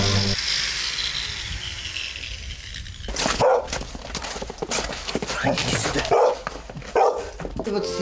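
For about the first three seconds a power tool cuts selenite stone with a steady high hiss. Then, from about three seconds in, a dog barks repeatedly in short irregular volleys, louder than the cutting.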